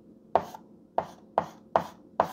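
Chalk striking and scraping on a blackboard while writing: four sharp taps, each with a short scrape, roughly every half second.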